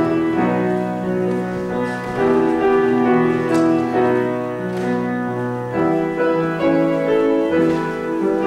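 A hymn tune played on a church keyboard in held chords that change about every half second to a second.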